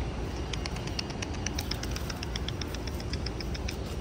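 A small bird chirping: a rapid, even run of short high chirps, about seven a second, lasting about three seconds, over a steady low outdoor rumble.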